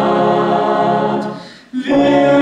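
Brass band with trumpets and cornets holding a sustained chord that fades away about a second and a half in. After a brief break, the band comes back in with a full chord near the end.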